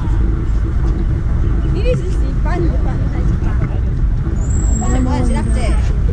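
Steady low outdoor rumble with short snatches of people talking, and a thin high whistle for about a second and a half near the end.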